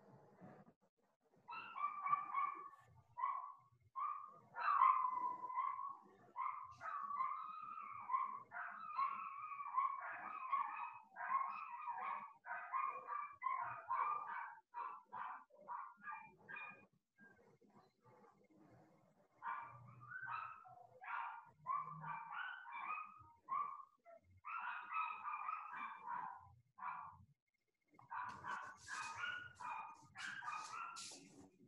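Dogs giving a long run of short, high-pitched cries, with a pause of about two seconds a little past the middle.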